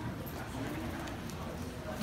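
A faint voice briefly murmuring over steady room noise.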